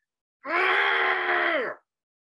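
A man's loud, drawn-out yell, held at one pitch for about a second and a half and dropping off at the end.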